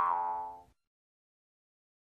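Tail of a cartoon 'boing' sound effect: a springy twanging tone that rings and dies away within the first second, then silence.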